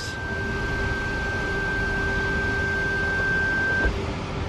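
2010 Toyota Camry Hybrid creeping in reverse on electric power: a steady high-pitched whine with a fainter lower hum from the hybrid drive. The whine cuts off suddenly near the end.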